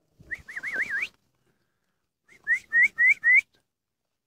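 A person whistling to call puppies: a warbling whistle that wavers up and down, then four short, rising whistles in quick succession.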